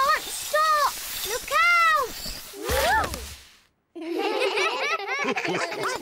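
A cartoon child's repeated wailing cries while sliding on ice, unable to stop, then a crash about three seconds in as she bowls over a group of other children. A chorus of children's laughter follows.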